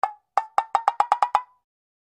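Knocking sound effect: one knock, then after a short pause a quick run of about eight hollow knocks with a clear pitch, like knuckles rapping on a wooden door.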